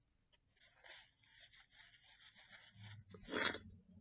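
A sheet of paper rustling and rubbing close to the microphone. Near the end comes a short, loud rush of noise.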